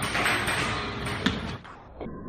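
Noisy arcade hall din with one sharp knock about a second in, a kick landing on the pad of a boxing-machine strength tester.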